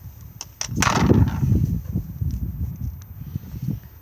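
Low, uneven rumbling on the microphone, typical of wind or handling noise on a handheld camera, opening with a brief rush about a second in. A few faint clicks come just before it.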